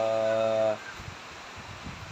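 A man's voice holds a drawn-out syllable for under a second, then stops, leaving a low, steady outdoor background noise.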